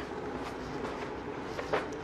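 Steady low background hum of room noise with no distinct events.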